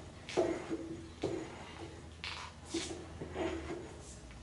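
Boring bar scraping inside a large poplar log turning on a lathe during deep hollowing: about five short scraping strokes roughly a second apart, over the lathe's faint steady low hum.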